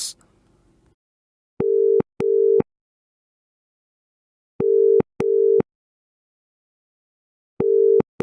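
UK telephone ringback tone: a steady low tone near 400–450 Hz heard as double rings, two 0.4-second tones 0.2 seconds apart, with the pairs repeating about every three seconds and silence between. Two full double rings sound, and a third begins near the end.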